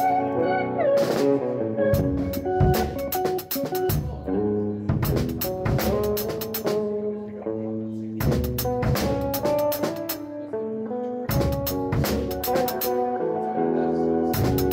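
Drum kit played with sticks in a laid-back shuffle groove, in phrases of a few seconds with short breaks between them, over sustained chords from another instrument that carry on through the breaks.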